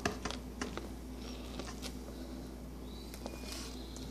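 A dog chewing corn on the cob: faint, scattered crunches and clicks over a low steady hum.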